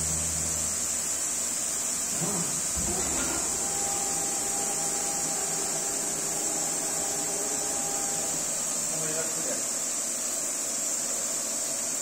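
Essetre CNC woodworking machine running in its shop, giving a steady high-pitched whine with a low hum in the first couple of seconds.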